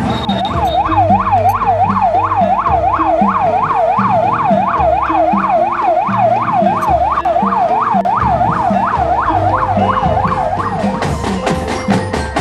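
Police escort siren on a fast yelp, rising and falling about three times a second. It stops about eleven seconds in, and a marching drum band starts playing near the end.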